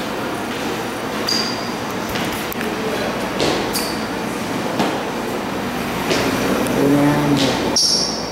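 Camera handling noise: fingers rubbing over the camera's microphone, a steady rustle broken by a few clicks and brief high pings.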